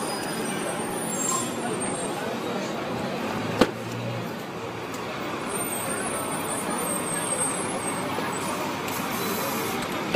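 Busy street traffic noise, steady throughout, with a single sharp click about three and a half seconds in.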